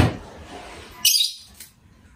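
A short bird call about a second in.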